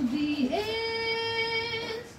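A woman singing unaccompanied: a short low phrase, then about half a second in her voice slides up to a higher note and holds it steady until just before the end.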